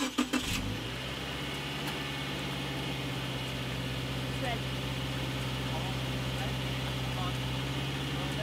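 Subaru Crosstrek's flat-four engine starting about half a second in and then idling steadily.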